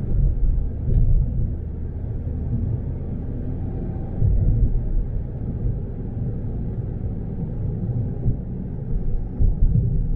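Low, steady road rumble of a moving car, engine and tyres heard from inside the cabin, swelling unevenly now and then.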